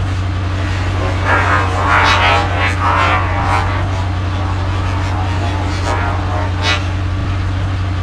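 Truck engine running steadily as a sound effect, with louder rough noises between about one and three and a half seconds in and a short one near seven seconds.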